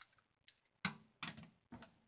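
Four short, sharp clicks and knocks, the loudest just under a second in, from a long lighter being clicked and handled over a stainless steel sink.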